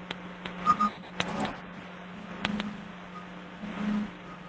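Steady low electrical hum on the audio line, with scattered faint clicks and a few brief soft noises.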